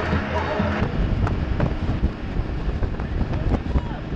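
Music that cuts off about a second in, then the steady rush of wind on the microphone and water noise from a speedboat running fast, with scattered knocks and passengers' voices.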